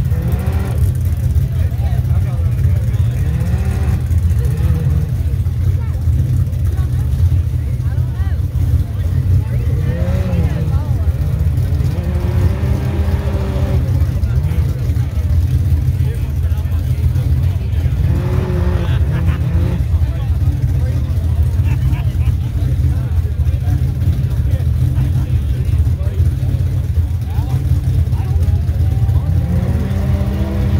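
UTV rock-racing buggy's engine revving hard in repeated bursts as it claws up a steep rock climb, each rev rising and falling in pitch, about six times, over a heavy steady low rumble.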